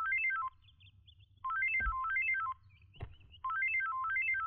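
Mobile phone ringtone: a short tune of quick beeping notes stepping up and down, about a second long, repeating every two seconds.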